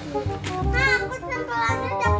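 Background music with a steady beat, with a child's high voice over it.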